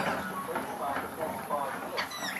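Young rainbow lorikeets chattering as they scuffle over seed on the ground, with faint talking under it.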